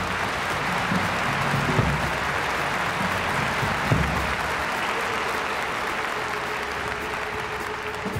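Concert audience applauding, a steady even clatter of clapping, with a few low thumps under it in the first half. A single held note comes in about five seconds in.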